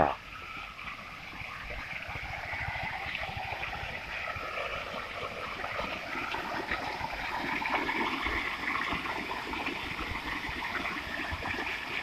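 Water fountain with many jets splashing into its basin: a steady rushing and splashing of falling water that grows a little louder over the first several seconds as the fountain comes closer.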